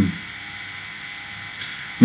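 Steady background hiss with faint steady tones: the room and microphone noise of a recording, with nothing else happening.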